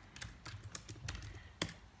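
Typing on a MacBook Air laptop keyboard: a run of irregular light key clicks, with one louder keystroke shortly before the end.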